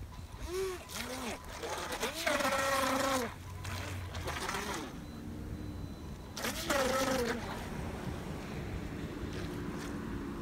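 GoolRC GC001 RC speed boat's electric motor revving in a series of short bursts, each a whine rising then falling in pitch, with splashing from the propeller. This is the capsized boat being driven in reverse and then forward to flip itself back upright.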